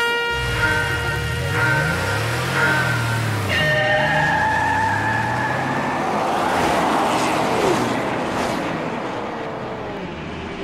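Music with long held notes for the first few seconds, then a crowd cheering as corgis race, swelling about five seconds in and fading near the end.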